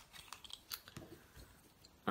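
Faint, scattered clicks and taps of small wooden colored pencils knocking against each other and their cardboard tube as one is pulled out.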